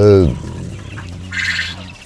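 A caged Japanese quail gives one short, harsh call about a second and a half in.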